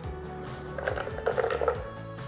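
Frozen dragon fruit chunks tipped from a bowl into a Vitamix blender jar holding coconut yogurt: a short run of soft, irregular knocks and patter about a second in, over steady background music.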